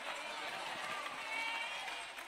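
Congregation noise in a large hall: a steady murmur of many voices with a few faint scattered calls.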